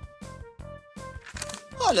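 Light background music with a steady beat and held notes, with a short spoken word near the end.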